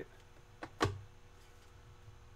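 A single sharp click about a second in, with a fainter tap just before it, as a trading card is handled in the fingers. Otherwise there is only low room noise.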